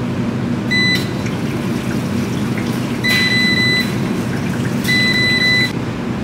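Top-loading washing machine's control panel beeping three times, a short beep about a second in and then two longer beeps, as its buttons are pressed, over a steady rush of water.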